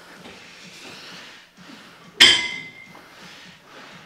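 A single sharp metallic clink of gym weights, about two seconds in, with a brief ringing tone after it, over faint gym background noise.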